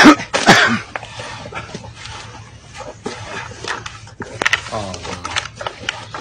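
A person's voice: a sharp, loud outburst at the start and a second one about half a second later, then quieter sounds with brief voice-like calls later on.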